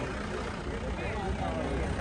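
Crowd background: faint voices of many people over a steady low rumble.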